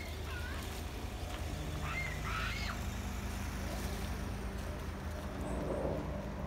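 Wind rumbling on a phone microphone, with short up-and-down chirping calls near the start and again about two seconds in. A low steady hum joins about a second and a half in.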